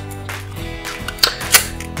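Background music, with three sharp clicks from an aluminium card holder as the last of eight cards is pushed in and its magnetic lid is closed; the third click is the loudest.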